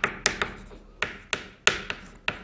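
Chalk tapping and scraping on a blackboard as a word is written. It is a quick, irregular series of sharp taps, about three a second.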